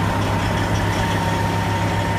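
Semi-truck diesel engine idling steadily: an even low hum with a faint steady whine above it.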